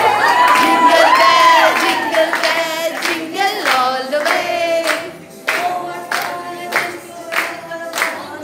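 A group singing together with hand-clapping in time, about two claps a second, the claps standing out more in the second half.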